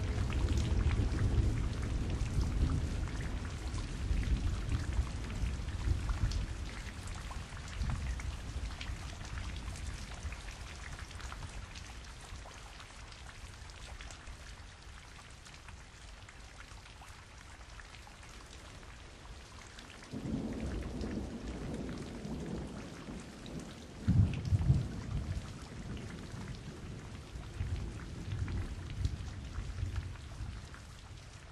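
Steady rain with rolling thunder. A long rumble fades over the first several seconds, and a new one starts about two-thirds of the way in, with the heaviest, sharpest peal soon after.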